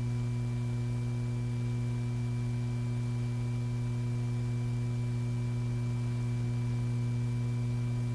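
Steady electrical hum on an old film soundtrack: a strong low hum with several fainter higher tones over a faint hiss, unchanging throughout.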